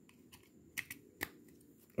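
Two short, light plastic clicks, a little under half a second apart, from a USB phone charger and charging cable being handled and fitted together, against a quiet background.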